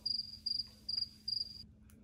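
A high, single-pitched chirp repeated evenly two to three times a second, four chirps, stopping about a second and a half in.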